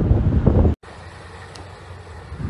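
Heavy wind rumbling on a phone microphone over fast-flowing floodwater. It cuts off abruptly just under a second in and gives way to a much quieter steady wash of noise.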